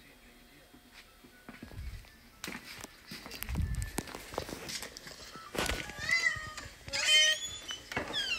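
A pet dog whining: two short high cries, the second rising, near the end, after a couple of dull thumps and some light knocking.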